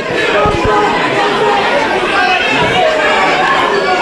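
Fight crowd chatter: a steady hubbub of many voices talking over one another around the ring.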